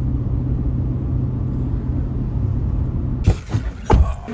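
Steady low drone of engine and road noise inside a moving car's cabin. Near the end it breaks off and a few sharp clicks or knocks follow.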